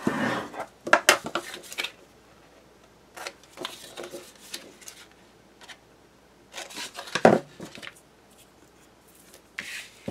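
Black cardstock being handled and creased with a plastic bone folder in the first two seconds, then scissors snipping small corners off the cardstock in a few short, sharp cuts, the loudest about seven seconds in.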